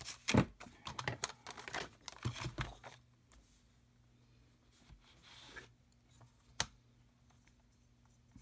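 Patterned paper handled and shuffled, rustling with quick taps and crinkles for the first few seconds. Then a softer swish as the sheet is slid into place on a paper trimmer, and one sharp click about six and a half seconds in.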